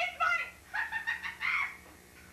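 A woman's high-pitched voice in shrill exclamations, not clear words, in two bursts, the second about a second long.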